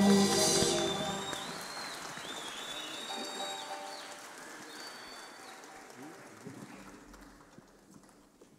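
The orchestra and choir's final chord dies away in the first moment, followed by audience applause with cheers and a few whistles, fading steadily to near silence.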